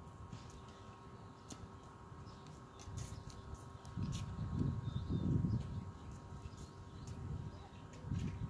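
Faint small clicks of pliers gripping and turning copper wire, over a low rumble that swells about halfway through.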